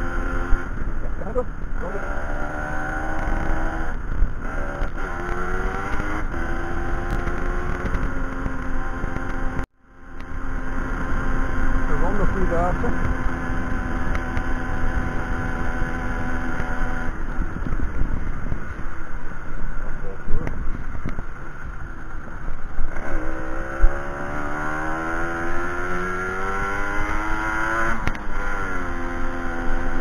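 A 1992 Aprilia Classic 50 Custom moped's 50 cc two-stroke engine running on the move, its note falling and rising several times as the throttle is eased and opened. The sound cuts out completely for a moment a little before ten seconds in.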